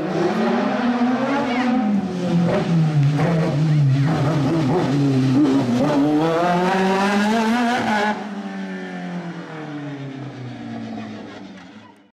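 Race car's engine revving hard, its pitch climbing and falling repeatedly with gear changes and lifts for the corners. It drops sharply about eight seconds in, then runs on more quietly and fades out at the end.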